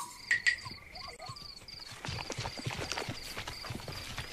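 Cartoon savanna ambience: a repeating high insect chirp over a steady insect trill. Three sharp clicks come in the first half second, and from about halfway there is a patter of soft, irregular, hoof-like knocks from the zebra herd.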